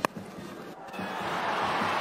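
Cricket bat striking the ball with a single sharp crack, followed by stadium crowd noise that swells steadily as the ball carries.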